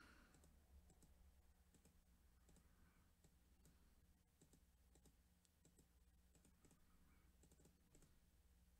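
Near silence with faint, irregular clicks scattered through it over a low steady hum.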